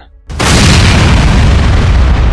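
Explosion sound effect: a sudden loud boom about a third of a second in, then a heavy, sustained rumble.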